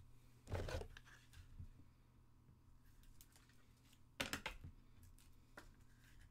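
Trading card being slid into a clear plastic sleeve and card holder: two brief plastic rustles, about half a second in and about four seconds in.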